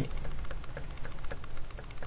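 Pencil point tapping and scratching on paper, dotting and hatching in a drawing: a run of light, irregular ticks.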